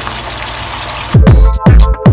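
A steady hiss of the salt-cod tomato sauce simmering in the frying pan, then about a second in, electronic background music with a heavy bass beat comes in over it.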